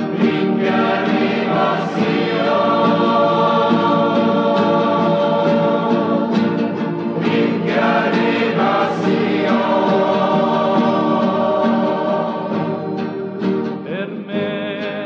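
A choir singing a sacred song in long, held notes.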